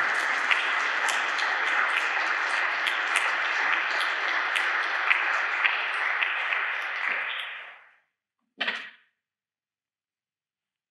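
Audience applauding, a dense clatter of many hands that fades out about eight seconds in. A single short noise follows a moment later.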